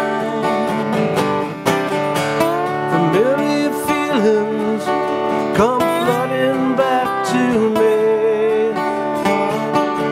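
Two acoustic guitars playing a country-style song: one strumming chords while the other plays a lead line high up the neck, with notes bent and slid up and down.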